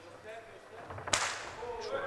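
A single sharp smack about a second in: a kickboxer's middle kick landing on the opponent's ribs. Faint voices can be heard around it.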